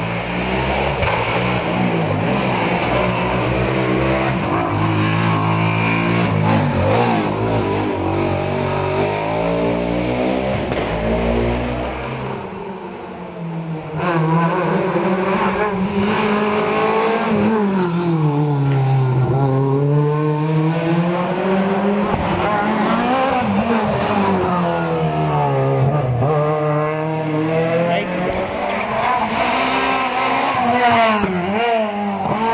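Rally car engine working hard up a mountain stage: in the first half its pitch holds and steps between gears, then from about halfway it climbs and falls again and again as the driver revs out, lifts and changes gear through the corners.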